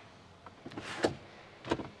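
A 2022 Hyundai Tucson's rear seatback being released by its pull lever in the cargo area and folding forward: a latch click about a second in, followed by a second knock near the end as the seatback comes down.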